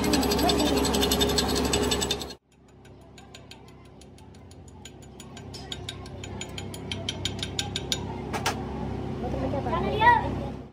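Metal lathe slowly turning a welded truck drive shaft in its four-jaw chuck, with a rapid, regular mechanical ticking of gears. The sound breaks off a couple of seconds in, then returns fainter and builds steadily louder, with a sharp double click near the end.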